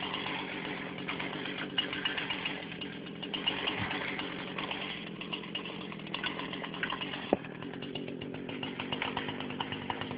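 Husqvarna 240 two-stroke chainsaw engine running steadily at a moderate level.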